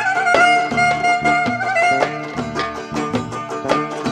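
Turkish Romani dance music (Roman havası): a clarinet plays an ornamented, wavering melody over steady percussion beats, with no singing.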